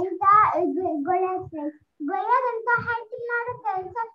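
A young girl's voice reciting, heard over a video call.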